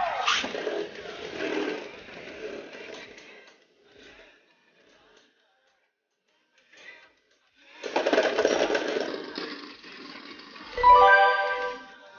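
Beyblade spinning tops whirring and clashing in a plastic stadium just after launch. The sound fades to near silence mid-battle, then a loud spell of clashing comes about eight seconds in. A short electronic tone follows near the end.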